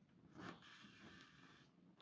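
Near silence, with faint rustling of hands handling a crocheted doll and drawing yarn through it, a little louder about half a second in.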